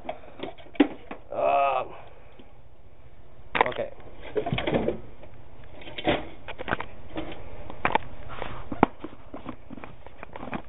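Scattered knocks, clatter and short rustles of containers being handled as flour and water are set out for mixing into a paste glue. Near the start there is a brief voice-like hum.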